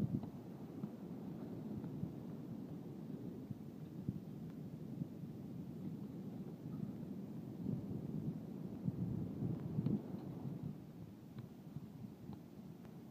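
Wind buffeting the phone's microphone as an uneven low rumble, gustier for a couple of seconds past the middle, with a few faint knocks.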